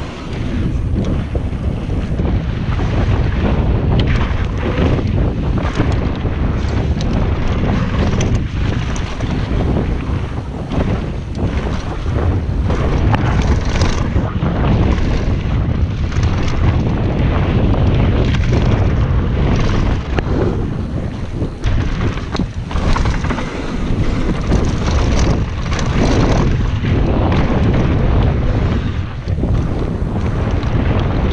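Wind rushing over an action camera's microphone as a mountain bike descends a dry dirt singletrack at speed, with steady tyre rumble and frequent clattering knocks from the bike jolting over bumps.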